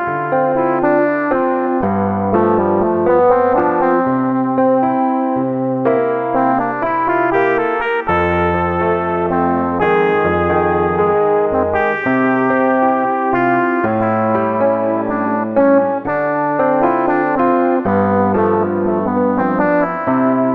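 Synthesizer voices played from a LinnStrument grid controller: a held bass line that changes note every second or two under chords and a melody, in a slow pop tune.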